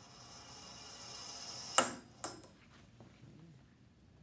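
A ball rolling down a lab ramp, its rolling noise growing louder as it speeds up, then striking the bottom of the ramp with a sharp clack that rings briefly, followed by a smaller click about half a second later.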